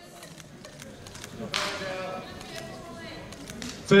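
Audience clapping in scattered, uneven claps, with a voice calling out from the crowd about one and a half seconds in.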